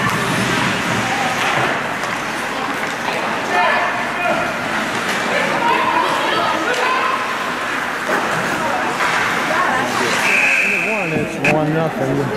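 Spectators' voices chattering in an ice rink, then a steady high-pitched scoreboard buzzer sounds once for a little over a second near the end, marking the end of the period as the clock reaches zero.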